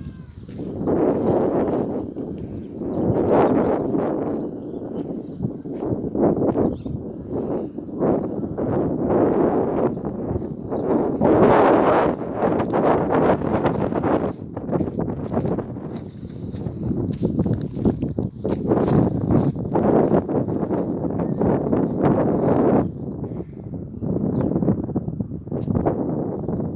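Footsteps walking along a muddy, stony dirt track, with irregular scuffs and swells of noise.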